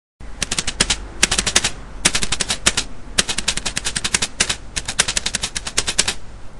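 A rapid-fire sound effect: sharp cracks about ten a second, in short bursts of under a second each with brief gaps between them.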